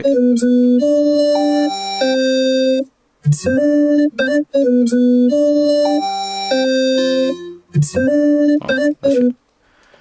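Vocoded voice from FL Studio: a vocal phrase turned into robotic synth notes, with steady pitches that step from note to note along the melody taken from the voice. The phrase breaks off and restarts twice, then stops about nine seconds in.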